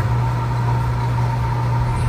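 A steady low hum, even in level throughout, with a fainter steady high tone above it.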